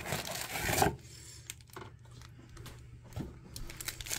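A foil trading-card pack being torn open and its wrapper crinkled, loudest in the first second, then quieter rustling and light clicks as the cards are handled.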